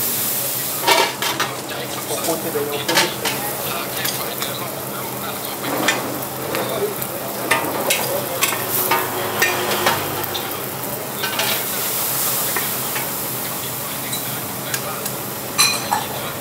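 Noodles and greens sizzling in a hot wok over a high flame, with a metal spatula scraping and clanking against the wok in quick, irregular strokes. A louder clatter comes just before the end.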